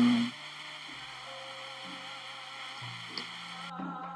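Soft background music: low held bass notes that change pitch every second or so, with a higher, wavering melody line entering near the end.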